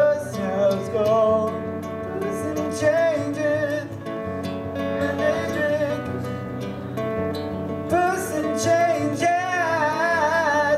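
A man singing a song into a microphone while strumming an acoustic guitar. He holds long notes with a wavering vibrato, strongest near the end.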